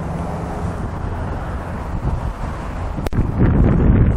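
2004 Corvette's 5.7-litre LS1 V8 idling steadily, with wind buffeting the microphone. A single sharp click about three seconds in, then louder low wind rumble.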